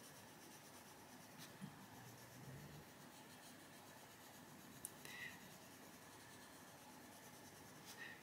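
Faint scratching of a Faber-Castell Polychromos coloured pencil shading on colouring-book paper, with a few small ticks.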